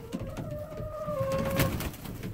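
A domestic hen giving one long, drawn-out call at a steady pitch, with a brief flurry of feather and wing noise near the end as a hen flaps.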